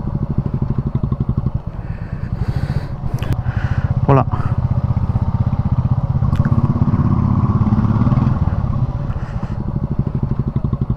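Royal Enfield Meteor 350's single-cylinder engine idling with an even, rapid thump while the bike waits in slow traffic. It picks up a little from about six and a half to eight and a half seconds in as the bike creeps forward, then settles back to idle.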